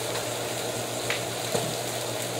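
Ham steak and eggs sizzling on a stovetop griddle, a steady frying hiss, with a faint click about a second in.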